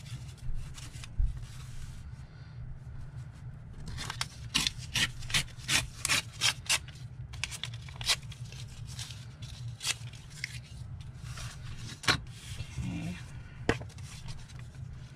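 Paper being handled and rubbed against a work surface: quick rustling and scraping strokes, thickest in the middle stretch, over a steady low hum.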